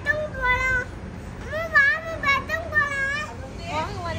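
A child's high-pitched voice making a string of short rising-and-falling calls without clear words.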